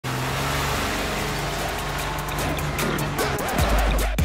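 Car engine and road noise from a phone recording made in a vehicle, with a low steady drone. Music fades in over it, and a deep bass beat starts about three and a half seconds in.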